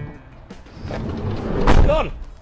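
A panel van's sliding side door rolled along its track and slammed shut, building up from about half a second in to a loud bang near the end, with a short rising call from a man's voice on top of it.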